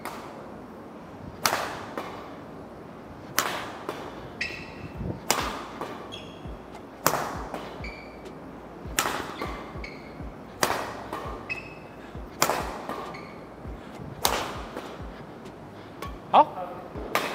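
Badminton rackets striking shuttlecocks during drills: eight sharp, loud hits about every two seconds, with fainter hits in between.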